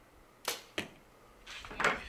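A compound bow shot: a sharp snap as the string is released, and about a third of a second later a second sharp smack as the arrow strikes the target. A louder burst of noise rises near the end.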